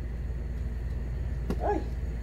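A steady low background hum with no other sound until a woman's short exclamation of 'ay' near the end; the batter pouring itself is not heard.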